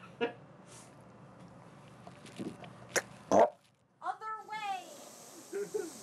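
A man drinking a cup of ranch-dressing soda, then a loud gagging noise from his throat about three seconds in, followed by a drawn-out voiced throat sound that bends in pitch: his reaction to the foul taste.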